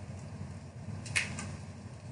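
Quiet room tone with one faint, short snip of small craft scissors cutting through cardstock, a little over a second in.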